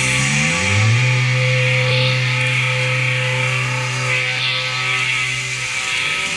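Final held note of a rock song: the drums stop, and a low electric guitar note slides down and is held, ringing for several seconds before it dies away near the end.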